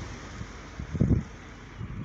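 Wind buffeting the phone's microphone: a low, uneven rush with a stronger gust about a second in.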